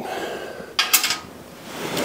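A short metallic clatter of a steel hand tool about a second in, as it is worked against or set down by the tractor's transmission.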